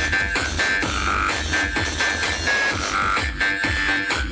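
Electronic dance music with a heavy, regular bass beat, played loud through a mobile sound system's stacked loudspeakers.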